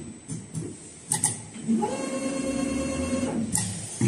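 Richpeace two-head automatic perforation sewing machine running: a few sharp mechanical clicks, then a steady motor whine that ramps up just under two seconds in, holds for about two seconds, and winds down.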